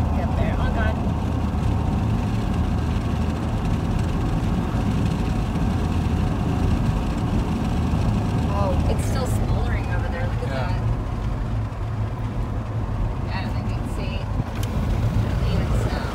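Steady road noise inside a moving car's cabin: engine and tyre drone with a low hum.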